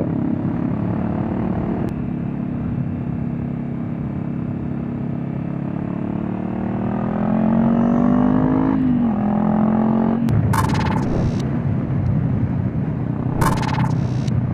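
Honda CB500X's parallel-twin engine with a GPR Furore Nero exhaust, running on the move: steady at first, then rising in pitch as it accelerates from about six seconds in and dropping abruptly near nine seconds as the throttle closes or it shifts. Two short bursts of rushing noise come near the end.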